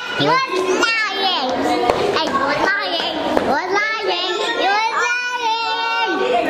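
Young children's voices calling out and chattering, high-pitched and sliding up and down in pitch, with no clear words.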